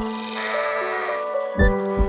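A sheep bleats over a background music track of sustained tones, with a deep drum beat near the end.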